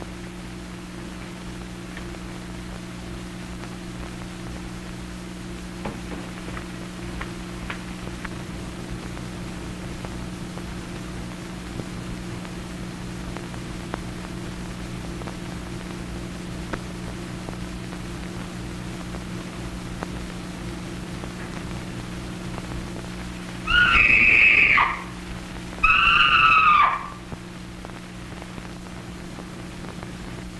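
Two high-pitched screams, each about a second long and about two seconds apart, played from a phonograph record, over the steady low hum of an early sound-film track.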